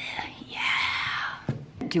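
A person's breathy, whispered voice lasting just under a second, followed by a short knock.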